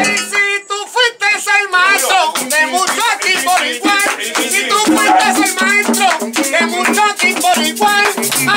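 Live plena: panderetas (hand-held frame drums) played in a fast rhythm, with hand claps and several men's voices singing and calling together in a small, crowded room.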